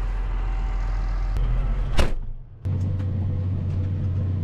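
Farm tractor engine running with a steady low drone. About halfway through there is a single sharp knock and a brief dip, then a steadier, stronger engine drone.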